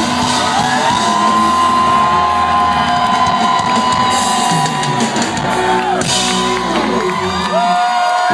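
Live rock band playing the close of a song, with long held notes ringing out over a full, loud mix, while a festival crowd whoops and shouts.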